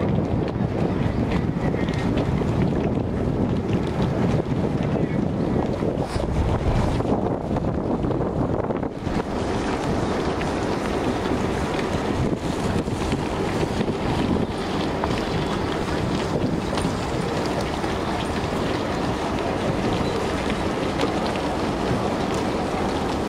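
Wind buffeting the microphone: a dense, steady low rumble with no distinct events.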